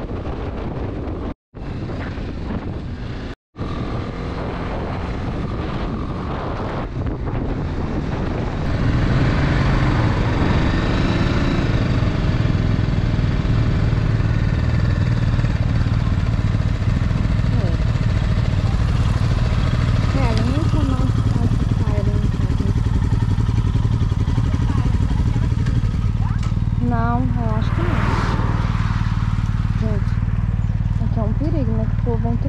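Motorcycle riding at road speed with engine and wind noise. From about nine seconds in, a motorcycle engine idles steadily with a low, even hum while stopped on the road shoulder.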